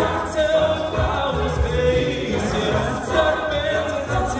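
A cappella group singing a pop arrangement in harmony, voices amplified through stage microphones and PA speakers, with a low pulsing beat underneath.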